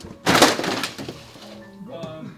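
A loud crash, just under a second long and fading away, as a stack of books falls and scatters across a hard hallway floor, over light music of short single notes.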